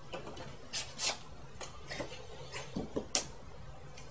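Paper mailing envelope rustling and crinkling in the hands as it is opened and a smaller envelope is slid out, in a string of short irregular scratches with a sharper crackle about three seconds in.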